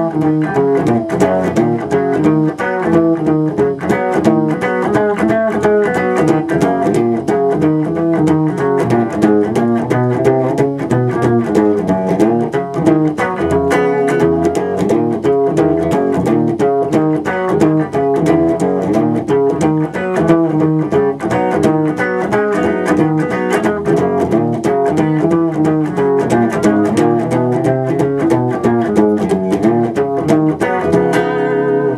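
Guitar playing a blues backing part in E: walking bass lines on the low strings while the other strings are muted, and a right hand that never stops, so the muted strings give a steady percussive chop under the bass notes.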